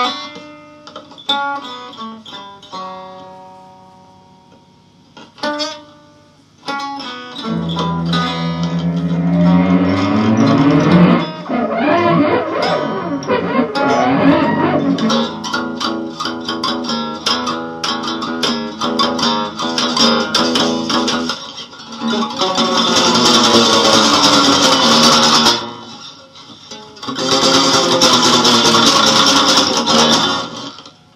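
Gibson ES-175D hollow-body electric guitar played loud through an amplifier in free-improvised noise: a few sparse plucked notes ringing out at first, then from about seven seconds dense strumming with sliding, bending pitches, and near the end two bursts of harsh, noisy strumming.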